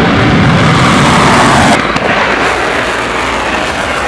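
Missile launch: the steady, loud rushing noise of a rocket motor at lift-off. It drops somewhat in level and changes about two seconds in.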